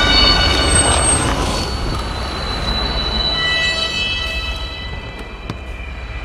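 Horror film score: several dissonant high tones held over a low rumble, fading through the second half.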